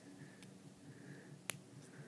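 A single sharp little plastic click about one and a half seconds in, against near silence: a Lego minifigure's cup accessory snapping into its hand.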